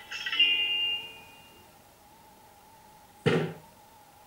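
A bright, bell-like ringing tone that fades out over about a second and a half, followed by a short thump about three seconds in.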